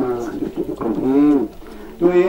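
Speech: a man's voice reading aloud over a microphone, with a short pause near the end.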